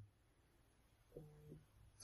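Near silence: room tone, with a faint, brief low tone a little over a second in.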